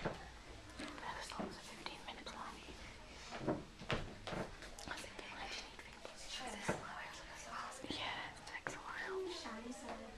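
Faint whispering and hushed talk, with a few short soft clicks and knocks as a round collapsible photo reflector is handled and turned over.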